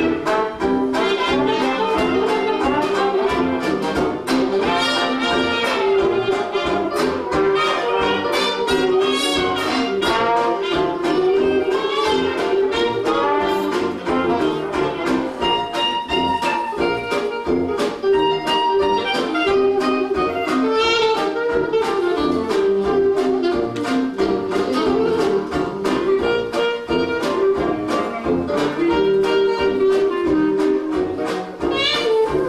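Live 1920s-style jazz band playing an instrumental passage: saxophone, clarinet, cornet and trombone over piano, banjo, sousaphone and drums, with a steady beat.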